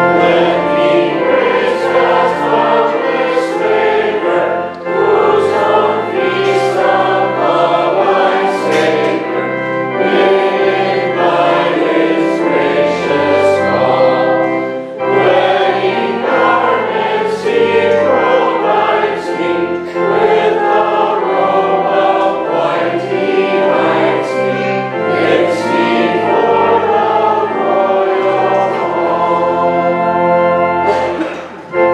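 Voices singing a sacred piece with organ accompaniment, in sustained chords that move on about once a second over a stepping bass line.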